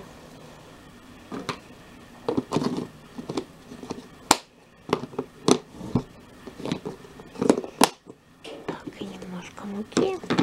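Plastic food-storage tub with snap-latch lid being handled and opened to get at flour, with a few sharp plastic clicks, the loudest about four seconds in and near eight seconds.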